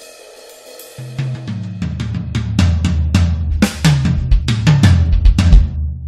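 Music led by a drum kit with cymbals, snare and bass drum over a low bass line. It starts softly with a cymbal wash, then the full groove comes in about a second in with a steady beat.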